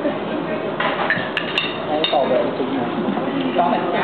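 Background chatter of diners, with a few sharp clinks of cutlery against plates and glasses between one and two seconds in.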